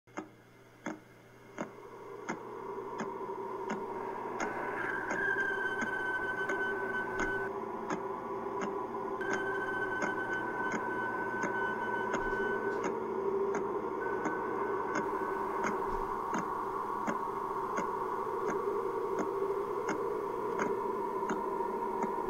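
Electronic soundtrack of steady ticks, about three every two seconds, over a sustained drone that swells in over the first few seconds. A higher held tone sounds twice in the middle.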